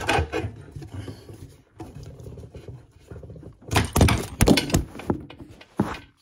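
Clunks and knocks of metal fittings and hands working under a bathroom basin, with a cluster of loud knocks about four seconds in and another sharp knock near the end, as the camera is jostled.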